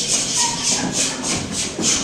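A steady rhythmic beat of short hissing, shaker-like strokes, about three a second, as part of music.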